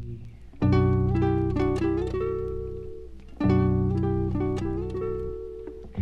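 Folk-rock music in an instrumental break between vocal lines: two phrases of plucked guitar chords over low held notes. They come in sharply just under a second in and again about three and a half seconds in, and each rings and fades.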